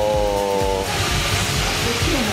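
A man's drawn-out hesitation sound, a held "uhh" at a steady, slightly falling pitch for about a second, over a steady hiss of background noise.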